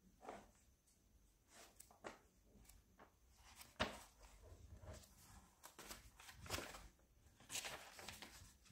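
Pages of a paperback puzzle book being leafed through: a series of soft paper rustles and flicks, the loudest a little under four seconds in.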